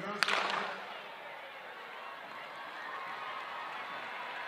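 A single sharp crack of the starter's gun about a quarter second in, starting the race, followed by steady crowd noise from the stadium stands.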